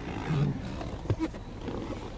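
Rustling and handling noise as a person climbs into a car's driver seat, with a short low sound early on and a single knock about a second in.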